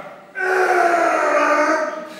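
A man's voice held in one long strained groan, about a second and a half, its pitch sinking slightly, as a heavy barbell is pushed up in a bench press.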